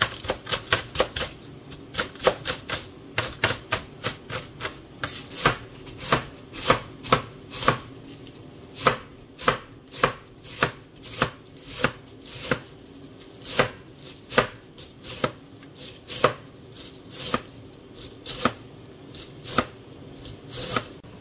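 Knife chopping food on a cutting board. The strokes come quickly for the first few seconds, then settle into slower, uneven strokes about two a second.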